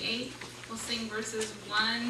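A woman speaking in short phrases with brief pauses, as if reading aloud; the words are not made out.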